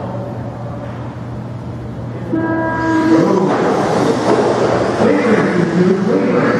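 A steady electronic start tone sounds for about a second, a little over two seconds in. Then the electric motors of several 1/16 scale Traxxas RC cars start whining, rising and falling in pitch as the cars pull away on the carpet.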